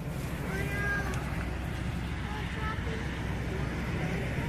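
Steady low rumble of traffic and car noise through an open car window, with a few faint, short high-pitched squeaks about half a second to a second in.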